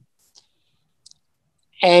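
A pause in a man's speech: near silence broken by two faint short clicks, then his voice resumes near the end.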